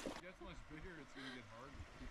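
Faint voices over a low, even outdoor background, with no clear splashing or scraping from the canoe.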